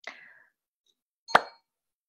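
A single sharp pop with a brief ringing tone, about halfway through, after a faint short rustle at the start.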